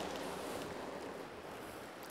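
Steady, even rush of a fast river running over rocks, easing slightly near the end.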